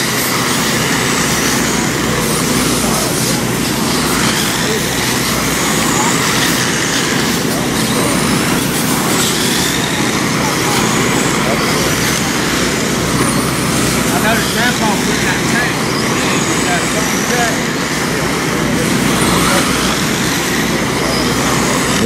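Several electric RC dirt oval race cars with 17.5-turn brushless motors run laps together: high motor whines rise and fall as the cars pass, over a steady wash of noise.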